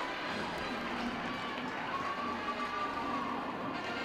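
Faint, steady arena background noise, with a faint tone that rises and falls a little past the middle.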